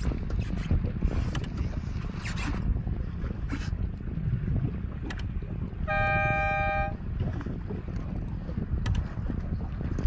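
A single horn blast lasting about a second, about six seconds in, a race signal at a sailboat race start. Underneath runs a steady low rumble of wind on the microphone and water noise.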